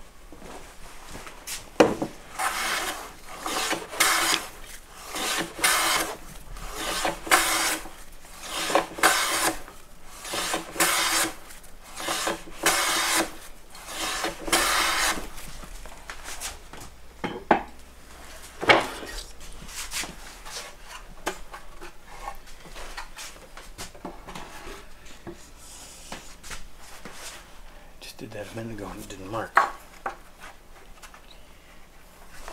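Hand plane taking shavings off a wooden part: over a dozen quick strokes, roughly one a second, trimming the piece a little so that it fits. After the planing stops, a few sharp knocks as the work is handled.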